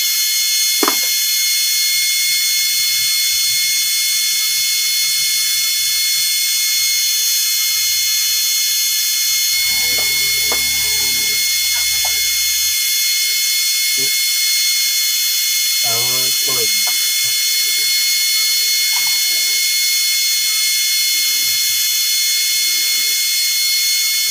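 A steady high-pitched hiss with several constant whining tones, unchanging throughout, with faint voices now and then.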